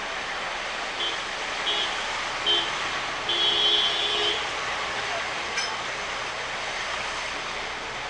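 Street traffic noise with a vehicle horn sounding three short beeps starting about a second in, then a longer honk of about a second.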